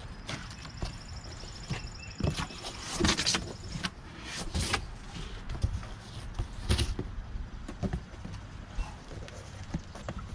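Box cutter slitting packing tape on a large cardboard box and the cardboard flaps being pulled open: an irregular run of scraping, tearing and rustling noises, loudest about three seconds in and again just before seven.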